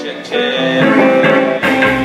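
A live rock steady band starting a song: keyboard and guitar chords come in about a third of a second in, and bass and drums join near the end.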